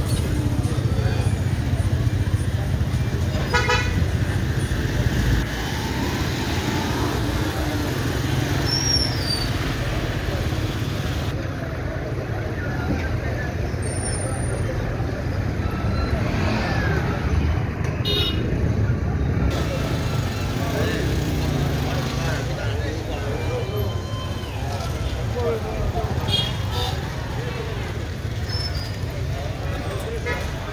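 Street traffic with a steady rumble of motorcycle and car engines, mixed with people talking all around. A vehicle horn toots in a quick run of short beeps about three or four seconds in, with more short beeps later on.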